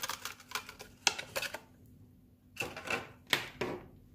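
Thin clear plastic packaging clicking and crackling as a head torch and its cable are pulled out of it by hand: a quick run of clicks over the first second and a half, then two short bursts of crackle later on.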